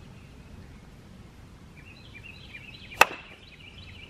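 A wooden croquet mallet striking a croquet ball once, a single sharp knock about three seconds in.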